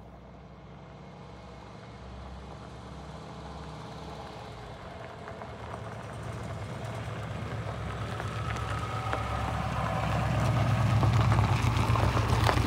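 Saab 95 V4's engine running as the car approaches on a gravel road, growing steadily louder until it passes close by near the end, with gravel crackling under the tyres as it arrives.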